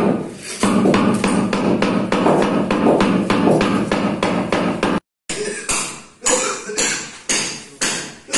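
Hammer tapping a marble floor slab to bed it down level on its mortar, in quick even knocks of about four a second. After a brief break about five seconds in, the knocks come slower and more spaced out.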